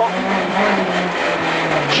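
Renault Clio Williams rally car's 2.0-litre four-cylinder engine, heard from inside the cabin, running hard at a steady note over road and tyre noise, its pitch dropping slightly in the second half as the car comes off the throttle for a corner.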